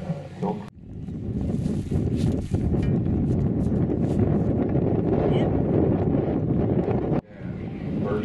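Wind buffeting the camera microphone: a steady low rumble that starts abruptly just under a second in and cuts off abruptly about a second before the end. A few words of a voice come just before it.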